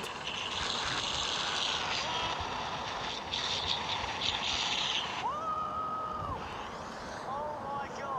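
Wind rushing over a helmet-mounted action camera's microphone as a mountain bike runs at full speed down a steep descent, a steady rush of air and tyre noise. A single held vocal call rises out of it a little past halfway.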